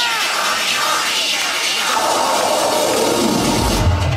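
Loud electronic dance music over a party sound system. A build-up with no bass and a falling sweep leads into the bass beat dropping back in near the end.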